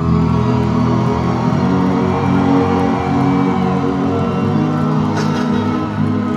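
Live band's slow instrumental intro through a concert PA: long held keyboard chords over a low bass line, heard from among the crowd.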